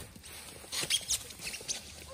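Scuffling and crunching in snow, with a cluster of short crackling sounds about a second in.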